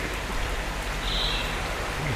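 Steady hiss of running water, like an aerator or filter outflow splashing in koi tanks.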